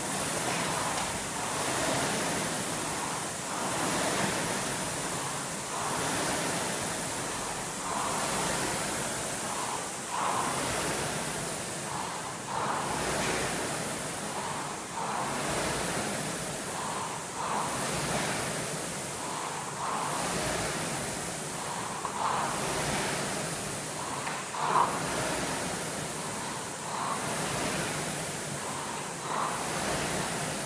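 Concept2 air rowing machine's fan flywheel whooshing with each drive stroke, a steady rise and fall about once every two seconds. One sharper knock comes late on.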